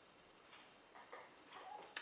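Near silence: quiet room tone with a few faint, brief small sounds.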